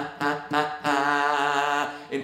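A man singing one pitch in short, repeated 'la' notes, about four a second, then holding the same note with vibrato for about a second, with an acoustic guitar: a pitch-accuracy drill, striking the centre of one note again and again.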